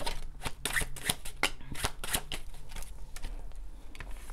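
A tarot deck being shuffled by hand: a quick, irregular run of card clicks and flicks.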